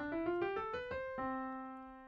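Piano playing a C major scale up the white keys, one note after another at about five notes a second. About a second in, it lands on an octave C chord that is held and fades away.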